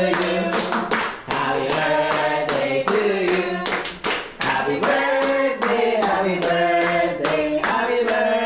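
A small group clapping in time, about three claps a second, while singing a birthday song together.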